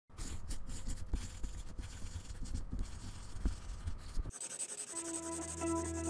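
Sketching on paper: a drawing tool scratching in quick, irregular strokes for about four seconds. A steady high hiss then comes in, followed by the start of music with a held chord.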